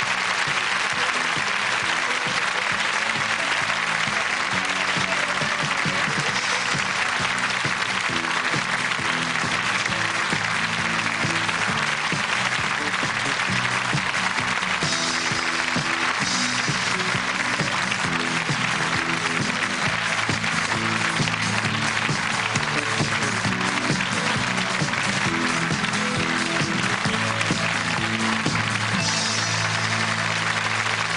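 Studio audience applauding steadily, with closing theme music playing along under the clapping.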